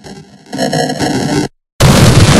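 Heavily distorted, glitchy edited audio with a choppy, filtered sound that gets louder about half a second in. It cuts out to silence for a moment, then jumps to a loud blast of harsh static-like noise near the end.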